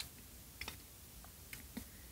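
A few faint, short clicks from two people drinking from glass bottles, over quiet room tone.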